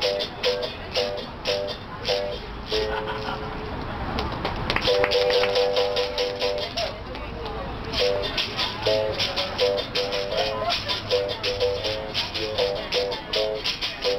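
Berimbau played with stick and caxixi: the struck steel wire rings out in a repeating capoeira rhythm, alternating between two or three pitches, with the caxixi rattle shaken along with the strokes. The rattling thins out for a moment about three to five seconds in, then the rhythm resumes.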